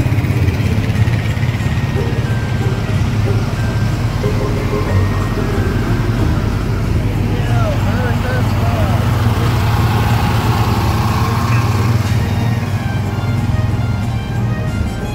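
Engines of parade vehicles running steadily close by, a low hum under music playing from the parade.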